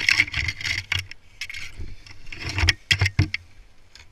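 Rustling and scuffing as boots and body move through dry leaves and brush, mixed with sharp clicks and jangles of metal rope gear such as carabiners and a descender. The noise comes in bursts, loudest in the first second and again near the three-second mark.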